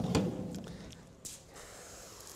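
A short knock, then a backpack sprayer's wand nozzle hissing faintly as it sprays a fan of liquid, starting with a brief spurt a little after a second in.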